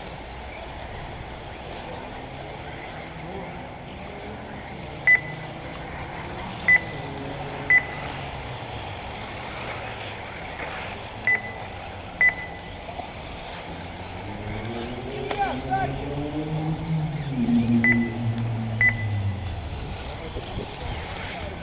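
Short, high single beeps of an RC race lap-timing system, seven of them at irregular intervals as cars cross the timing line, over a steady outdoor background. Voices grow louder over the last few seconds.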